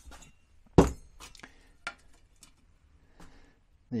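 Thin sheet-metal stove parts, a steel ring and a tin lid, handled and set down on a workbench: one sharp metallic knock about a second in, then several lighter clinks and taps.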